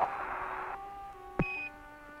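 Air-to-ground radio loop between transmissions: the hiss of the downlink cuts off about three quarters of a second in, then a click and one short, high beep (a Quindar tone) mark Mission Control keying up to answer. A faint steady hum stays underneath.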